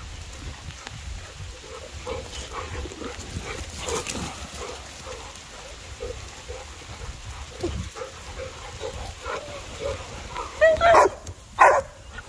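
Several dogs playing close by, with a steady run of short breathy vocal sounds through most of the stretch and two or three louder, sharper dog calls near the end.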